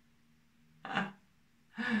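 A woman's short, breathy laugh about a second in, then she starts laughing again near the end.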